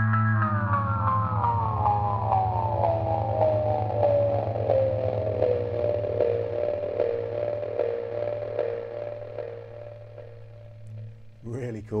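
Wampler Faux Tape Echo delay pedal with its repeats at maximum, the echoes feeding back into a sustained tone. As the Echo (delay time) knob is turned, the pitch slides steadily down over several seconds, then settles into evenly pulsing repeats that fade away near the end.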